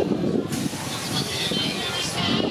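Spinning fish-car amusement ride running with a steady mechanical rumble; about half a second in a sudden hiss sets in and carries on, over voices.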